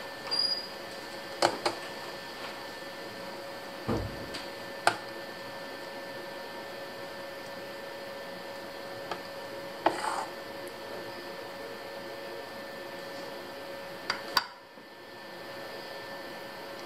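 Metal ladle clinking against a steel saucepan and a glass baking dish while béchamel sauce is scooped and spooned over a gratin. There are several scattered clinks over a steady hum.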